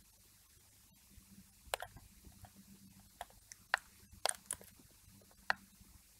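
Computer mouse clicking as a brush is painted on a mask: several faint, sharp clicks, some in close pairs, over a low steady hum.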